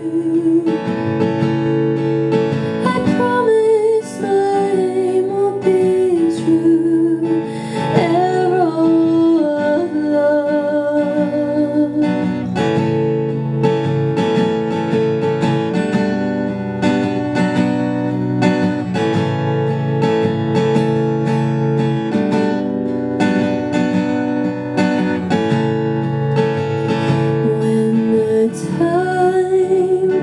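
Acoustic guitar playing a steady strummed accompaniment, with a young woman singing over it for the first several seconds and coming back in near the end; in between the guitar plays alone.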